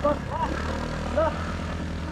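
Motorcycle engine idling with a low, steady hum, with brief voices over it.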